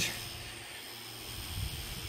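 Tiny whoop quadcopter's 8 mm motors spinning at idle, a faint steady whir.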